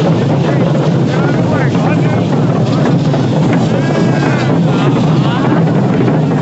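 Dense, continuous rattling and jingling from many marching dancers' cocoon leg rattles and metal belt jingles, mixed with crowd voices over a steady low rumble.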